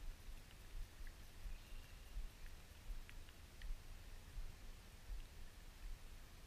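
Wind buffeting the microphone as a low, uneven rumble that swells and drops. A few faint high chirps and ticks come in the middle.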